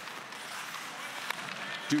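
Ice hockey play: skate blades scraping and hissing on the ice, with a couple of sharp stick-and-puck clacks, one near the start and one a little past halfway.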